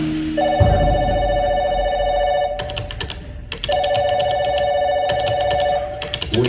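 Telephone ringing sound effect in a percussion show's soundtrack: two rings of about two seconds each, both a steady two-note trill, with a short run of sharp clicks in the gap between them.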